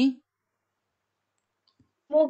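A recited syllable dies away at the very start, then near silence with one faint click near the end.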